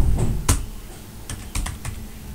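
Computer keyboard being typed on: a run of irregularly spaced keystroke clicks, the loudest about half a second in and a quick cluster of keystrokes near the end.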